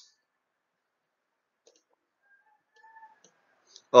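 Near silence broken by a few faint, short clicks in the second half.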